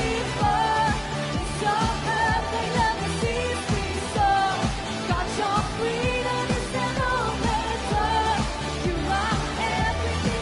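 Live band playing an upbeat pop-rock worship song: a lead voice sings the melody over electric guitar, bass and drums with a steady beat.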